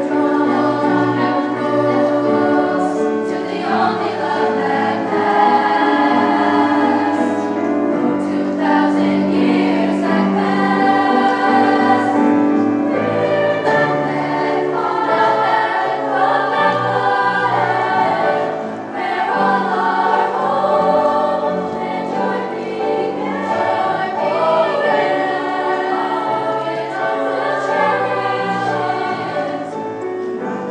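Treble choir of young women singing in parts, with some long held notes.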